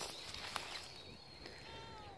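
A short, faint, falling meow from a stray cat near the end, with a single soft click about halfway through.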